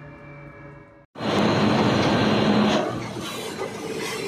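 A soft ambient music tone cuts off about a second in. Loud, steady machine noise with a low hum follows from a horizontal peeler centrifuge discharging dewatered maize flakes, and it becomes somewhat quieter near the three-second mark.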